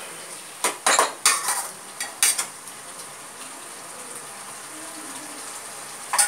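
Spatula scraping and knocking against a kadai as chicken is stirred over a high flame: several sharp scrapes in the first two and a half seconds, then a steady sizzle as it fries.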